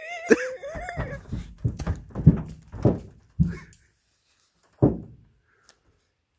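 A man whimpering and laughing in pain from lime juice in his eyes: a high, wavering whine in the first second, then a string of short, low bursts of laughter about half a second apart, the last near five seconds in.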